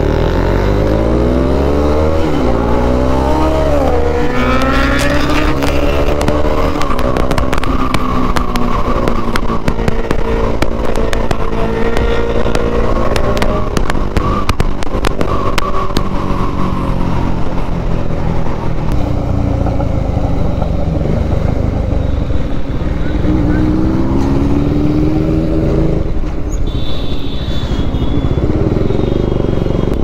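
Motorcycle engine pulling hard and rising in pitch, then dropping at each gear change, several times over, with steady road and wind rush underneath.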